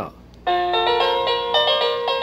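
Hampton Bay wired electronic doorbell chime playing its melody of steady electronic notes, starting about half a second in when the button is pressed. It plays even with its diode wired backwards.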